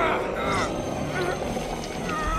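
Short strained vocal sounds, rising and falling in pitch, three in quick succession over action background music, as a sword-wielder is caught by a lizard monster's tongue in a cartoon fight.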